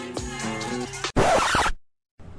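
Intro music with held notes ending, followed about a second in by a loud, half-second scratching noise effect that cuts off abruptly.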